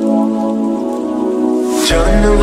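Steady rain falling, mixed with the intro of a slowed, reverb-heavy song made of held chords. Near the end a rising whoosh sweeps up.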